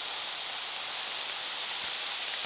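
Floodwater rushing: a muddy torrent pouring over a road, heard as a steady hiss of turbulent water.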